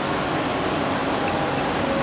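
Steady, even rushing noise from an air-handling source such as a room fan, with no change in pitch or level.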